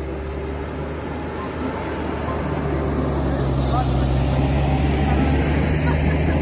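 Trackless tourist road train driving past on a paved road, its engine running with a steady low hum. It grows louder as the train approaches and its carriages roll by.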